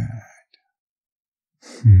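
A man's deep, soft, breathy voice: a short murmur at the start, about a second of silence, then the word "good" near the end.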